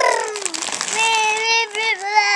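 A toddler crying: a wail that falls in pitch at the start, then a long, high, steady whine held for about a second near the end.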